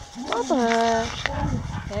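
A woman's voice in one drawn-out call that rises, then holds steady for about a second, followed by a few shorter voice sounds.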